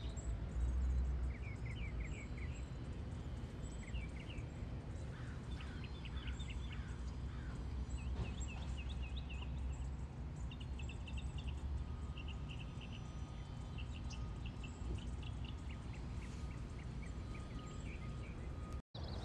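Wild birds singing outdoors: repeated short phrases of rapid notes, several in a row, with thin high chirps over a steady low rumble.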